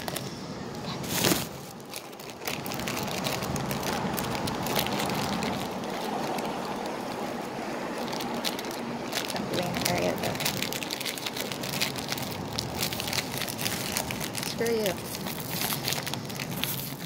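Plastic packaging crinkling and rustling in the hands as small toys are handled, with a louder crackle about a second in and faint voices in the background.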